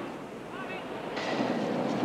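Outdoor background noise: a steady rushing hiss that swells about a second in, with a brief faint voice.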